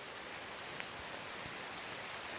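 Steady hiss of light rain falling, with one faint tick just under a second in.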